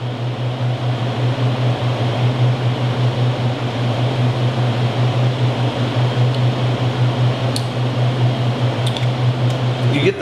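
Steady mechanical hum with an even rushing noise, like a fan or air-handling unit running, with a couple of faint clicks near the end.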